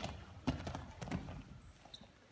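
Several short thumps and scuffs of knees, shoes and bodies on a wrestling mat as a takedown is driven through.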